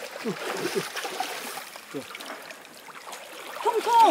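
Brook water splashing and trickling as a long-handled hand net is scooped through a shallow stream and lifted, water running out through the mesh.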